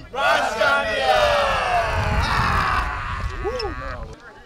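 A group of young men shouting together in one long cheer, starting all at once and sliding down in pitch over about three seconds, with a single short shout near the end.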